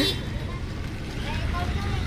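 Outdoor street background: a steady low rumble with faint voices in the distance and a brief sharp sound right at the start.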